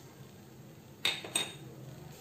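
Two light clinks of a small bowl knocking against the rim of a non-stick kadai, about a second in and a third of a second apart.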